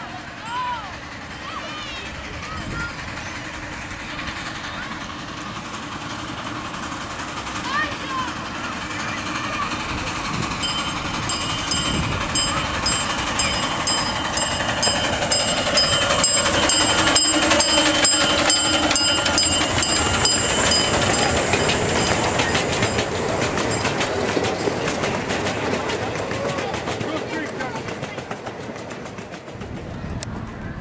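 A 5/12-scale live steam locomotive pulls its passenger cars past, growing louder to a peak about halfway through and then fading. Wheels click steadily over the rail joints, with a steady high-pitched tone through the middle of the pass.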